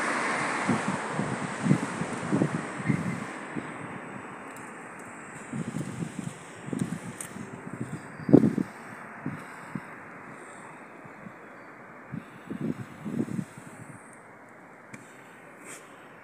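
Wind noise on a handheld microphone, strongest at first and easing off after a few seconds, with irregular low thumps through it.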